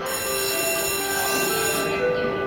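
Platform signal buzzer sounding once for nearly two seconds, starting and cutting off abruptly: the departure instruction signal given to the conductor of the departing train.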